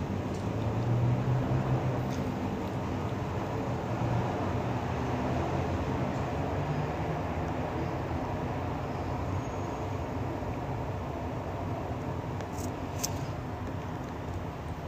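Steady low rumbling background noise, with one short click near the end.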